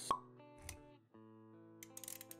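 Intro music made of held synth-like notes, with a short sharp pop about a tenth of a second in, which is the loudest sound, and a softer low thud just after half a second. The music cuts out for a moment around one second in, then comes back.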